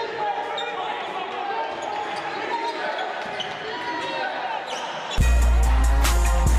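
Live sound of a basketball game in a gym: a ball bouncing on the hardwood court and voices echoing around the hall. About five seconds in, loud music with a heavy bass beat cuts in suddenly.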